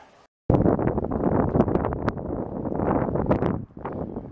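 Wind buffeting the camera microphone outdoors: a loud, uneven rumble that cuts in abruptly about half a second in and eases shortly before the end.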